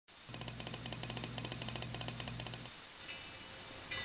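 Logo-intro sound effect: rapid, even clicking over a low hum for about two and a half seconds, cutting off, then a fainter held tone.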